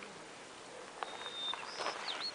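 Faint bird calls over quiet lakeside ambience: a thin, steady whistle about a second in, then a short high call near the end.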